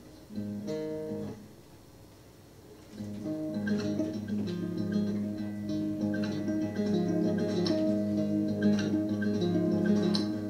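Nylon-string classical guitar played solo as a song's introduction. A chord rings briefly about half a second in and fades, then steady fingered playing begins about three seconds in and continues.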